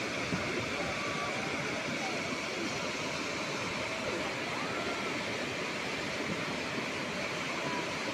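A mudflow (sel) of fast, muddy floodwater rushing past, a steady, unbroken rush of churning water.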